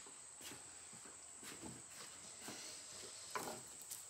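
Faint, scattered light taps and clicks of tools and parts being handled on a wooden workbench, over a steady, thin high-pitched whine.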